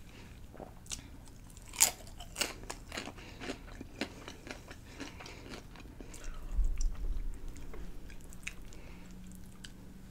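Crunchy potato chip bitten and chewed close to the microphone: a sharp crunch about two seconds in, then a run of smaller crackling crunches as it is chewed. About six and a half seconds in there is a brief low rumble, then quieter chewing.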